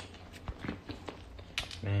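A woman chewing a mouthful of pizza close to a phone microphone: a few soft clicks and wet mouth sounds over a low steady hum, followed near the end by a single spoken word.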